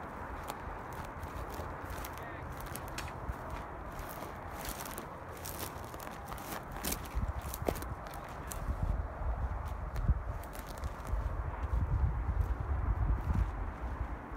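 Footsteps through dry desert brush, with twigs crackling and snapping and branches brushing past, scattered irregular clicks throughout. From about eight seconds in the steps turn heavier, with low thumps.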